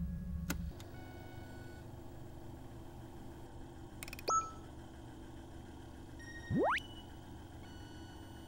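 Electronic sci-fi sound effects of a video call coming through on a spaceship screen: a short beep with a quick upward chirp about four seconds in, then a long tone that glides steadily up from low to high and ends on a held high beep near the end. Low background music cuts off under a second in.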